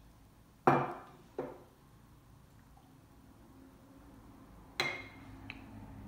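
Glass mason jar and drinking glass knocking on a kitchen countertop: a sharp knock about a second in, a lighter one just after, and another near the end.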